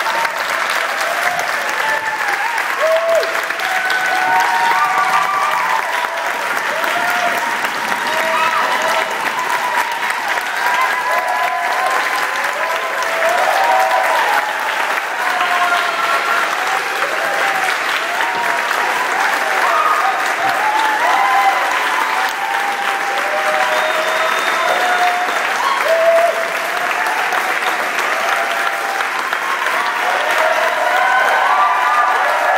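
Audience applauding steadily, with many voices calling out and whooping over the clapping.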